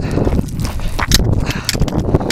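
Footsteps crunching on the loose stones and gravel of a rocky mountain path, a few irregular steps a second, over a heavy rumble of wind on the microphone.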